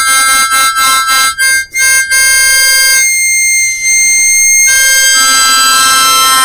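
Harmonica playing: a quick run of short notes, then a single high note held for about a second and a half, then fuller chords.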